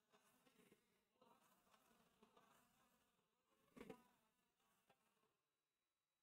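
Near silence: faint room tone, with one faint tick a little before four seconds in.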